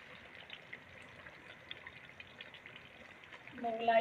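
Faint crackling sizzle of chicken masala frying in a steel pot while a thick almond paste is poured in and scraped off its bowl with a silicone spatula. A woman's voice begins near the end.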